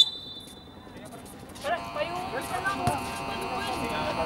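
Indistinct voices of people on and around the court, with a steady hum of several held tones setting in a little under two seconds in.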